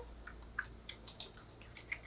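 Quiet room with a few faint, scattered clicks and small taps, such as from handling the plastic dolls and cups.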